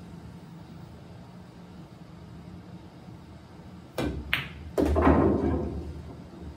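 A pool shot: the cue tip clicks against the cue ball about four seconds in, and the cue ball clicks sharply into the object ball a moment later. Then comes a heavier thud with a low rumble as the object ball drops into the pocket. It is a stop shot, the cue ball stopping dead at contact.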